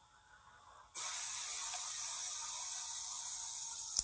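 Near silence, then a steady hiss that switches on suddenly about a second in and holds level until a click at the very end.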